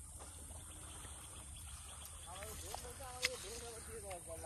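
A person's voice speaking softly in the last second and a half, with one sharp click just past three seconds, over a steady low hum and a high steady hiss of outdoor background.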